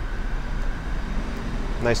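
Steady low rumble of street traffic, with a faint thin tone in the first second. A man's voice starts near the end.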